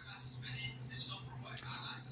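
A woman whispering under her breath, short breathy hisses without voice, over a steady low electrical hum.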